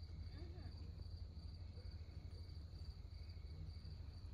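Crickets chirping in a steady, fast-pulsing trill over a low, steady hum.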